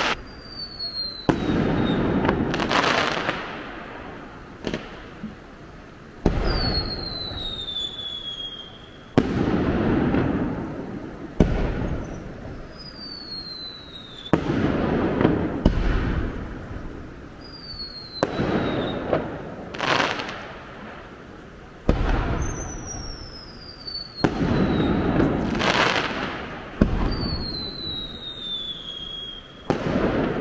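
Aerial fireworks display: firework shells bursting with sharp bangs every two to three seconds, each followed by a rolling echo that dies away over a second or two. High whistles fall in pitch between several of the bursts.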